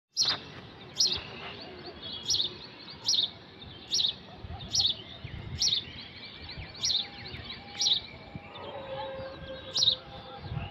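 Birds chirping: one bird repeats a sharp, high call about once a second, with fainter chirps from other birds between.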